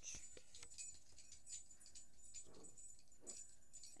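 Near silence with faint, scattered clicks and rustles, typical of a phone being handled and moved close to a glass jar.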